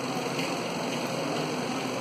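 Steady hiss of lecture-hall room noise, with a couple of faint ticks.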